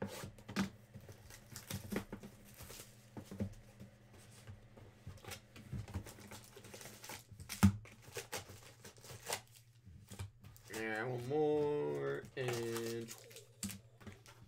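Plastic wrap crinkling and tearing off a sealed trading-card hobby box, then the cardboard box being opened and foil packs lifted out, with scattered light clicks and scrapes. Near the end a voice hums briefly over the handling.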